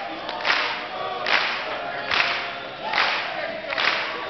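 Men's a cappella group singing an upbeat soul song behind a soloist, with sharp claps landing on the beat a little more than once a second.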